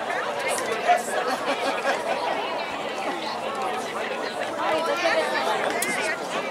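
Crowd of spectators chatting at once: many overlapping voices, none clear enough to follow.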